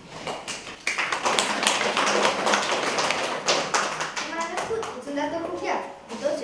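Audience of children and adults clapping, starting about a second in and dying away after about four seconds, with voices coming in near the end.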